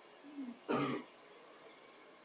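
A person clearing their throat and then coughing once: a short low throat sound, followed by a single harsh cough just under a second in.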